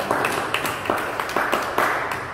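A small group applauding, with the separate hand claps heard about three times a second.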